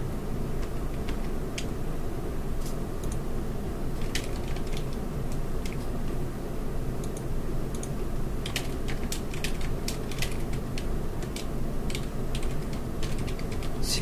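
Computer keyboard being typed on: scattered single keystrokes and quick runs of clicks, busiest in the second half, over a steady low hum.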